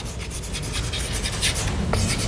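Chalk writing on a chalkboard: a quick run of short scratchy strokes as letters are written.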